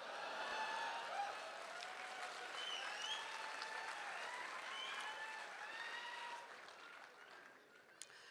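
Audience applauding in a hall, with a few faint voices calling out, dying away over the last second or two.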